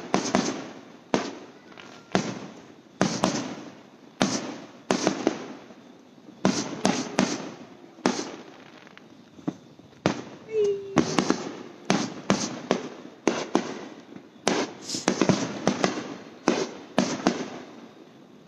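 Consumer aerial fireworks bursting overhead: a rapid series of sharp bangs, one or two a second, each trailing off in an echo.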